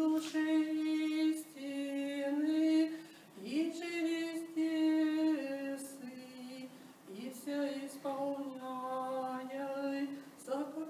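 A woman singing solo and unaccompanied: a slow, chant-like melody of long held notes, each about a second and a half, moving by small steps in pitch.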